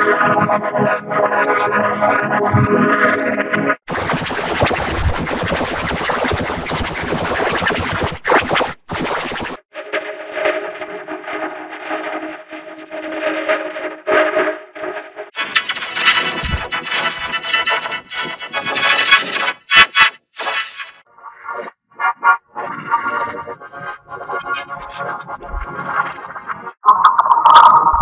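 Logo jingle music run through heavy audio effects: distorted and pitch-shifted, with abrupt switches between versions every few seconds, including a harsh hiss-like stretch from about four to ten seconds in.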